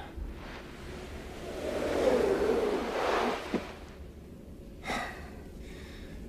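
A person's long, breathy gasp that swells and fades over about two seconds, followed by a short breath.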